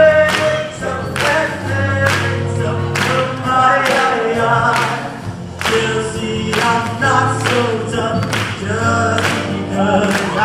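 Choir singing with an amplified lead voice, over a steady beat that falls about every three-quarters of a second.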